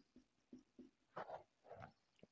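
Faint strokes of a marker on a whiteboard: four short strokes in the first second, then two longer ones about a second in.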